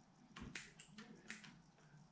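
A few faint, sharp snips of small bonsai scissors cutting through fine lemon-tree roots, against near silence.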